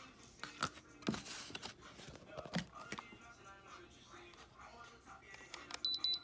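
Faint clicks and handling noise, then near the end a Diamond Selector II diamond tester starts beeping in quick high pulses as its probe is held on a diamond stud earring. The beeping is the tester's signal that the stone reads as real diamond.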